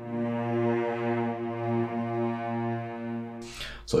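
A sampled cello section (orchestral strings sample library) plays a slow, sustained legato line. It moves to a lower note right at the start, and its loudness swells and eases in slow waves that follow a hand-drawn modulation curve, giving uneven, humanized dynamics. The playback stops shortly before the end.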